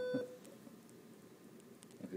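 A short, steady electronic beep at the very start, over the last of a laugh, then quiet room tone.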